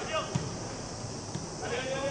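Footballers shouting short calls to each other across the pitch, with the thud of a football being kicked about a third of a second in.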